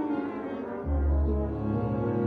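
Chamber orchestra playing sustained chords with brass to the fore, and a loud low note coming in just under a second in.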